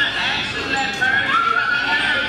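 Several voices at once, loud and indistinct, with overlapping high-pitched pitch lines and no clear words.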